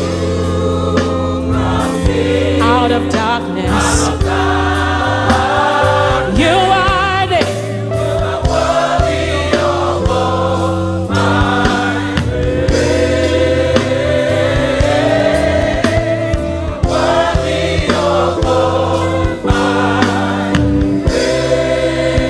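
Women's gospel choir singing a slow worship song, led by a woman soloist whose voice wavers and runs in ornamented lines above the held choir chords. Steady bass and sustained chords from the backing band run beneath the voices.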